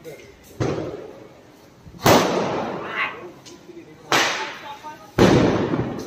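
Firecrackers going off on the street: four sharp bangs, each trailing off with a short echo, the loudest about two seconds in and near the end.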